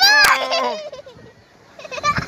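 A child's high-pitched, wavering cry in the first second, with a couple of sharp clicks at its start and a lower voice trailing off beneath it.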